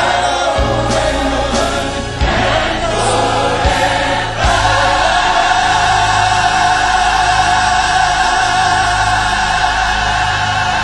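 Choir singing a gospel praise chorus with band accompaniment, the lines 'forever and forever' over a few low drum hits. About four and a half seconds in they land on 'and forever more' and hold one long sustained chord.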